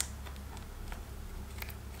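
Small scissors cutting packing tape on a cardboard box: a few faint, short clicks and snips.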